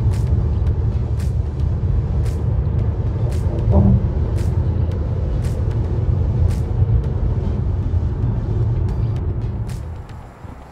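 Steady low road and tyre rumble heard from inside a car cruising at highway speed, with light sharp ticks at uneven intervals and music playing along. The rumble eases off near the end.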